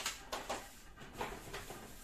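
Shopping bag and packaging being handled: a few soft clicks and crinkling rustles as items are put down and taken out.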